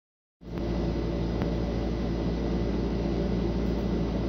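Bass combo amplifier switched on and idle, giving a steady low electrical hum with hiss, with a couple of faint clicks as its controls are handled.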